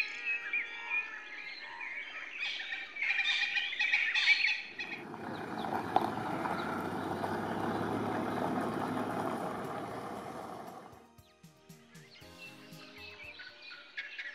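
Birds singing and chirping for about the first five seconds. A steady noise follows for about six seconds, then fades.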